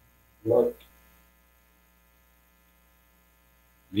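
A short spoken syllable about half a second in, then a faint, steady electrical mains hum from the recording setup.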